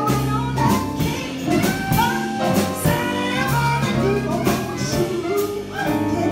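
Live jazz combo: a woman sings a melody into a microphone over drum kit with cymbals and a low bass line.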